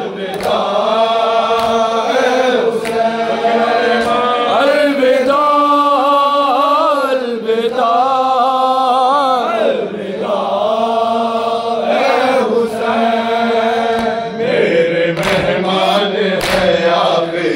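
A group of men chanting an Urdu noha together in unison, unaccompanied, the long sung lines rising and falling in pitch. A few sharp slaps of hands striking chests (matam) come through near the end.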